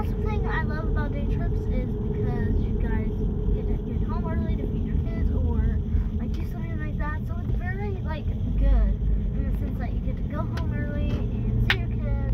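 Steady low rumble of a car's engine and road noise heard inside the moving car's cabin, with a child's voice talking on and off over it.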